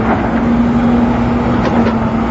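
A wheel loader's diesel engine running steadily at a construction site, with a held hum over a wash of machinery noise.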